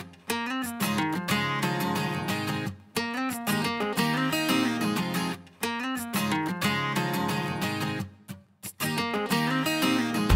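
Background music: an acoustic guitar picking a repeating melody, with a short break about eight and a half seconds in.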